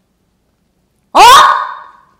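Silence, then about a second in a woman's single loud, sharp "eh?" that rises in pitch: a demanding spoken interjection.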